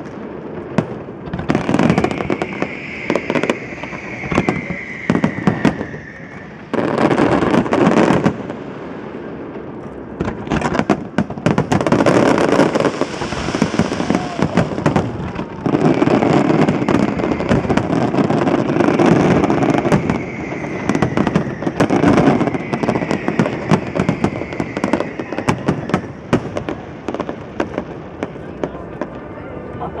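Fireworks display: aerial shells bursting in rapid volleys of bangs and crackles, with the densest barrages about seven seconds in and through the middle stretch.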